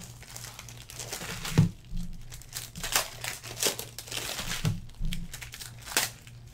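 Foil wrapper of a trading-card pack crinkling and tearing as hands open it and pull the cards out, in irregular rustles and crackles, the loudest a little over a second and a half in.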